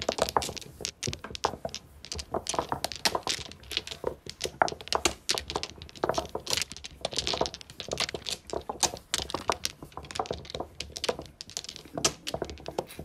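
Mahjong tiles clattering against one another, a dense, continuous run of sharp clicks and clacks with no pause.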